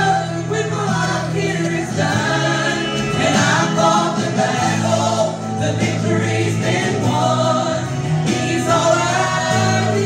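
A female gospel trio singing in harmony into microphones, amplified through the church PA, over steady held low accompaniment notes.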